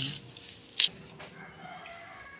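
One sharp knock about a second in, from the garlic and kitchen knife being handled on a wooden cutting board. After it comes a faint, drawn-out pitched call in the background.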